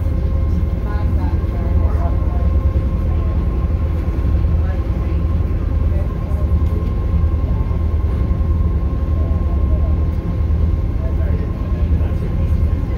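A tour boat's engine running under way with a steady low drone, with faint voices in the background.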